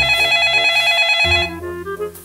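A landline telephone's electronic ringer trilling loudly, stopping about a second and a half in, over background music.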